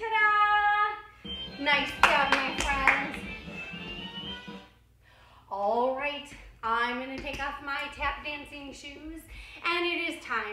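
A voice holds one sung note for about a second, then a few seconds of hand claps over voices. After a short pause near the middle, a voice goes on in short phrases.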